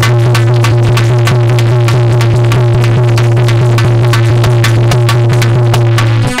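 Instrumental music with no singing: a harmonium holding a loud low note over a fast, even percussion beat.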